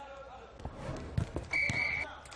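A podcast sound-effect sting: three dull ball thuds over faint background voices, then a short, steady, high-pitched tone in the last half second.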